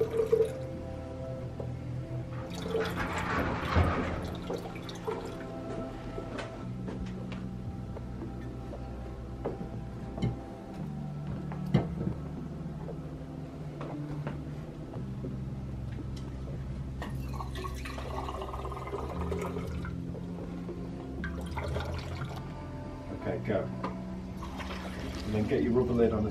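Liquid running from a dispensing tap into a glass graduated measuring cylinder, in three separate fills, over background music.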